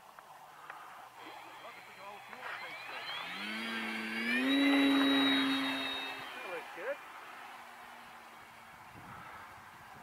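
Electric motor and propeller of a Flite Test Scout foam RC plane opening up to full throttle for takeoff. A whine rises in pitch from about three seconds in, holds at its loudest for a second or two as the plane lifts off, then fades as it climbs away.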